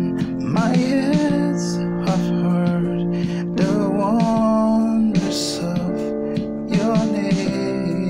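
Piano keyboard playing a slow 1-4-6-5 chord progression in F major (F, B-flat, D minor, C), changing chord every couple of seconds, with a voice singing the melody along.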